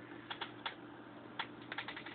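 Computer keyboard keys clicking: three separate clicks in the first second, then a quicker cluster of four or five near the end.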